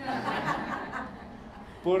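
Brief laughter following a joke, a noisy chuckling that fades out about a second in.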